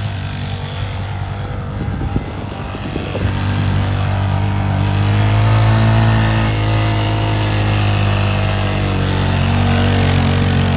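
ATV engine running hard as its wheels spin through snow. It sounds rough and choppy for a couple of seconds near the start, then settles into a steady drone.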